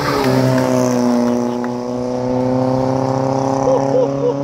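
A car engine running at steady revs, an even drone that drops slightly in pitch during the first second and then holds.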